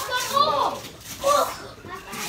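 Children's excited voices and short shouts, with the rustle and tearing of wrapping paper being ripped off presents.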